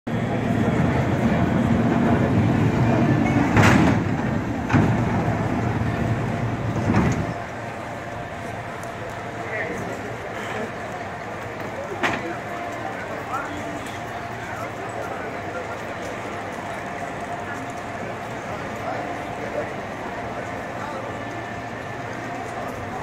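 San Francisco cable car rolling in over its rails with a heavy low rumble and three sharp clanks, coming to a stop about seven seconds in. Afterwards the crowd chatters and there is one more clank.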